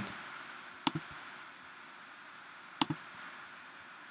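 A few sharp computer keystroke clicks over a faint steady hiss: a quick pair about a second in and a single click near three seconds.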